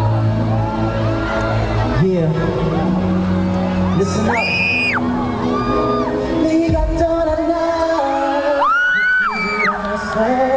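Opening of a song playing loud over a concert sound system, its held notes steady underneath, with fans close by screaming high; the loudest screams come about four seconds in and again near the end.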